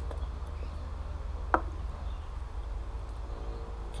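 An aluminium beer can set down on a wooden tabletop: one short knock about a second and a half in, over a low steady outdoor rumble.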